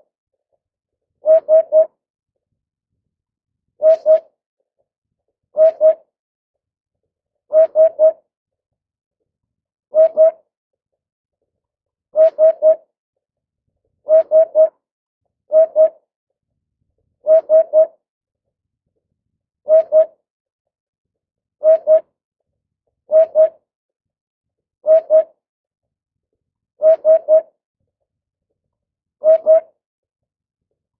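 Eurasian hoopoe singing its low hooting "oop-oop-oop" song: short groups of two or three soft hoots, repeated about every two seconds.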